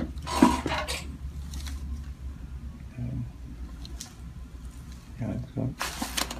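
Chiropractic adjustment: a few short, sharp joint pops and clicks, with breathy vocal sounds from the patient and a steady low hum underneath.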